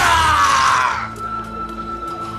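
A man's drawn-out scream on the drama's soundtrack, falling in pitch and ending about a second in, over a dramatic music score; a single steady high note of the score holds on after it.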